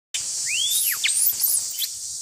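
Forest ambience: a steady, high insect drone with several quick bird chirps over it, one arching up then down in pitch. It starts abruptly a moment in.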